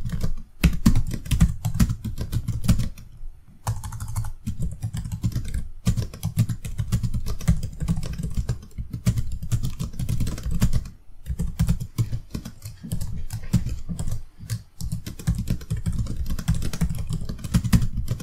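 Rapid, continuous typing on a computer keyboard, the keystrokes coming in dense irregular runs with a few short pauses.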